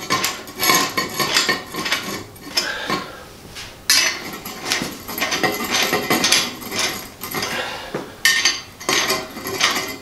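Black iron pipe flanges being tightened onto threaded pipe legs with pliers: irregular clinking and scraping of metal jaws on the iron fittings, in bursts throughout.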